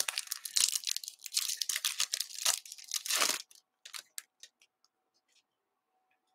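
Baseball card pack wrapper being torn open and crinkled, a dense rough tearing and crackling for about three and a half seconds, followed by a few light clicks as the cards are pulled out and handled.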